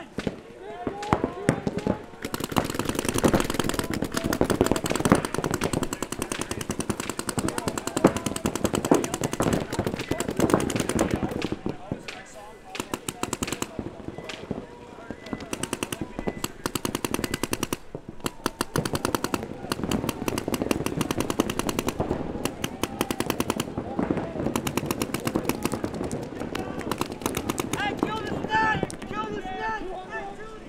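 Paintball markers firing in long, very fast strings during a match, with several short breaks, over players' shouting that is loudest near the start and near the end.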